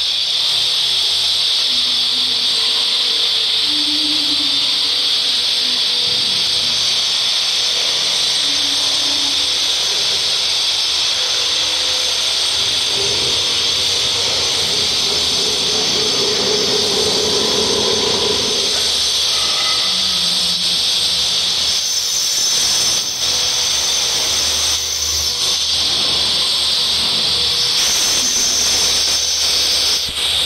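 A power tool running continuously at a steady speed, giving a loud, high-pitched, hiss-like whine that does not change.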